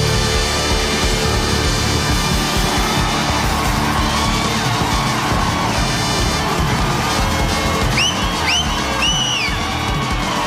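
Live rock band playing a loud instrumental break, with a dense, steady sound. Near the end, three short high tones slide up and back down over the music.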